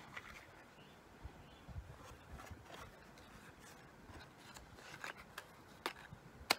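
Faint handling of a small foil-covered cardboard jewellery box: light rubbing and small clicks as it is turned in the fingers, with a couple of sharper ticks near the end.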